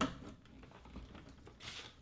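A light click right at the start, then faint handling noises as a power cord is fitted to a TV's power board.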